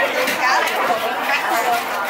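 Indistinct chatter of many overlapping voices in a busy market, steady and continuous, with no single voice standing out.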